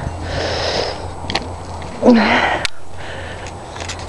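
A person sniffing and breathing close to the microphone: two breaths about two seconds apart, the second louder and ending with a brief low voiced sound, with a few small clicks from handling the camera.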